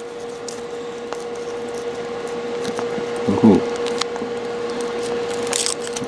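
Faint crinkling and small clicks of fingers working at the foil wrapper of a Kinder Surprise chocolate egg, over a steady hum.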